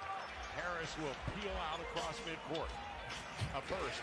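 Basketball game broadcast audio playing quietly: a basketball bouncing on the hardwood court in repeated dribbles, under a commentator's voice.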